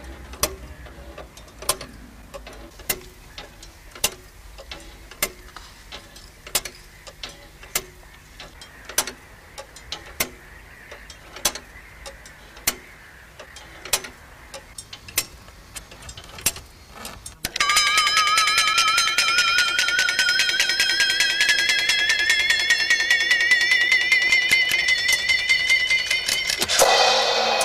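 A clock ticking roughly once a second, with fainter clicks between the ticks. About two-thirds of the way through, a loud alarm starts suddenly: a warbling tone whose pitch climbs steadily.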